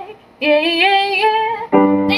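A woman singing one long held note with vibrato, accompanied on a grand piano, which strikes a new chord near the end.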